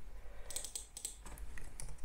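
Computer keyboard being typed on: a quick run of faint key clicks starting about half a second in.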